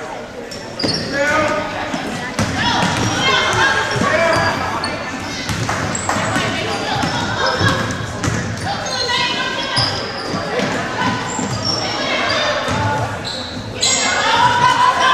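Voices of players and spectators calling and shouting in a large, echoing gymnasium, with a basketball bouncing on the hardwood court.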